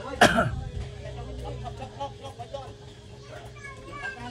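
Workers' voices talking and calling to each other, opening with a loud, sharp burst of voice just after the start, over a faint steady hum.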